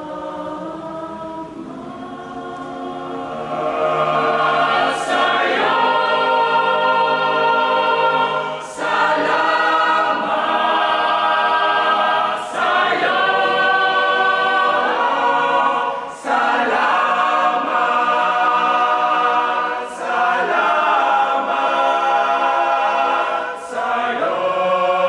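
Boys' choir singing a cappella in held chords, starting soft and swelling louder about four seconds in, with brief breaks between phrases every few seconds.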